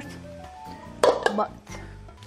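Background music with steady held tones, and a brief loud clatter about a second in.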